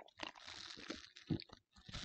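Faint clicks and rustling from a drink can being picked up and handled, with a few sharper ticks spread through it.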